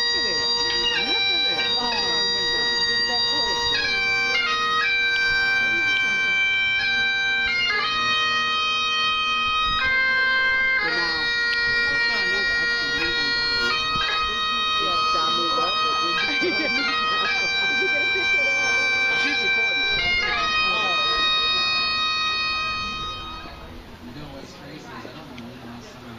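Bagpipes playing a slow melody of long-held notes over a steady drone; the music fades out near the end.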